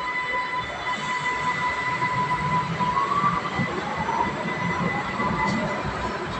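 Vienna U-Bahn metro train running along the platform as it pulls out, with a steady high whine and a continuous rumble on the rails; the whine rises slightly in pitch about halfway through.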